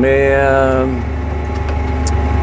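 A man's voice holding one drawn-out syllable for about the first second, over the steady low drone of a CLAAS Axion 830 tractor's diesel engine, heard from inside the cab while it pulls a seed drill.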